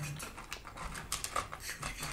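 Paper fast-food packaging, a fries carton and bag, crinkling and rustling as a hand handles it, in a run of small irregular crackles.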